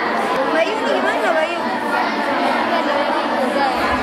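Chatter of many young women's voices talking over one another at once, a group of students going over their books together.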